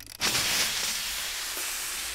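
Pressurised jet of water blasting out of a vomiting-robot demonstrator and splashing into a large clear plastic tank: it starts suddenly a moment in and runs on as a steady spraying rush.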